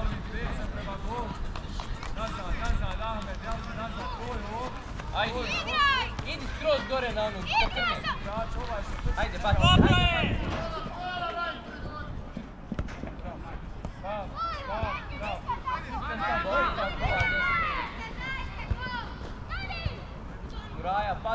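Children and adults shouting calls across a youth football pitch during play, voices rising and falling in pitch. A louder thump comes about ten seconds in.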